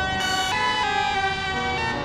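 Flute amplified and processed live by electronics, playing a quick run of short held notes that step up and down in pitch a few times a second, with a bright, edgy tone.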